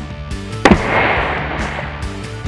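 A hammer blow bursts a round object full of liquid on asphalt: one sharp crack, then about a second of spraying, splashing liquid. Background music plays throughout.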